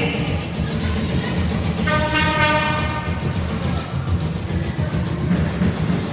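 Steady low din of a sports hall, with a single horn-like blast lasting under a second about two seconds in.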